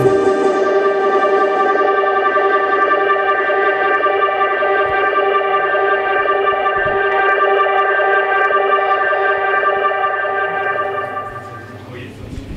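Electronic backing track ending on one long held keyboard chord: the bass drops out at the start, the highs thin away and the chord fades out about a second before the end.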